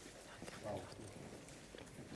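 Quiet studio with faint, scattered footfalls of dancers shifting on the floor, and a brief faint voice about two-thirds of a second in.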